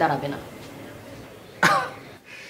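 A man's short, breathy laugh near the end, a single brief burst.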